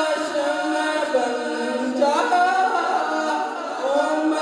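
A young man singing an Urdu naat unaccompanied into a microphone, in long, held notes that bend slowly in pitch.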